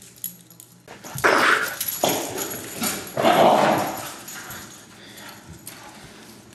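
Hungarian vizsla puppy giving two loud, rough, drawn-out barks about two seconds apart, each just under a second long.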